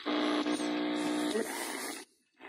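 AM radio reception between stations as the tuning dial of a Prunus J-160 retro radio is turned: a steady buzzing tone over static hiss, with a brief high whistle about half a second in. The buzz stops about a second and a half in, leaving hiss that cuts off suddenly at the end.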